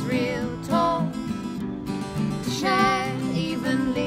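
Folk song played live on two strummed acoustic guitars, with a melodic vocal line held and bent between lyrics.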